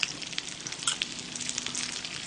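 Smoked duck slices, sausages and dumplings sizzling on a tabletop griddle: a steady sizzle with many small crackles and pops scattered through it.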